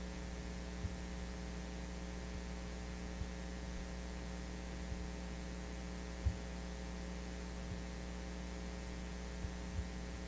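Steady electrical mains hum with a ladder of overtones, picked up through the microphone and sound-system feed. A few soft low thumps come through, the clearest about six seconds in.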